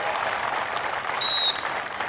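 Audience applauding, an even clapping noise, with a short high-pitched tone about halfway through.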